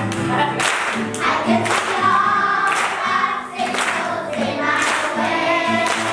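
Children's choir singing, with hand clapping along to the song.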